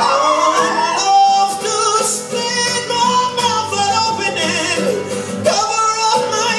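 A male singer sings long, wavering held notes with vibrato, gliding in pitch near the start, over a strummed acoustic guitar.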